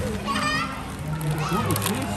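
Young children's voices and background chatter, with a high-pitched child's voice about half a second in.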